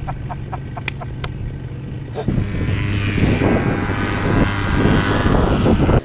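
A paramotor's engine and propeller running steadily, with a short laugh at the start. About two seconds in, the sound jumps louder and rougher, with a steady low drone.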